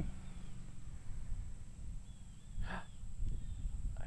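Quiet outdoor ambience: a low rumble, as of wind on the microphone, with a few faint, thin bird whistles.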